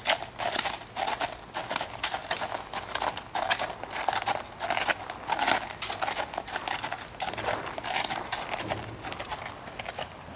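Tennessee Walking Horse walking on a gravel driveway: a steady, uneven run of hoofbeats crunching on the gravel.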